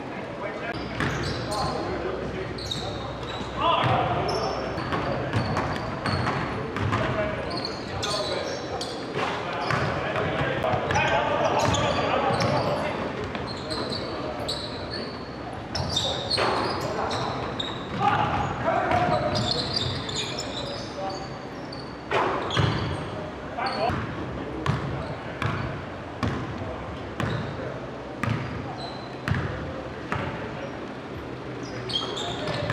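Basketball dribbled and bouncing on a hardwood gym floor, a run of sharp thuds at irregular intervals, with players' voices calling out, echoing in a large gym.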